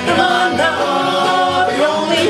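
Small acoustic country band playing live: two voices singing in harmony over acoustic guitars, mandolin and upright bass, the bass stepping through low notes.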